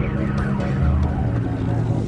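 Eight-wheeled armored car's engine running steadily as the vehicle drives up over a sandy crest.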